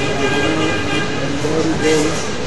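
A single voice chanting in long held notes that step up and down in pitch, in the manner of Quran recitation.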